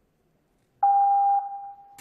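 A single electronic beep tone through the arena's sound system, starting about a second in, loud for about half a second and then fading, just ahead of the routine music.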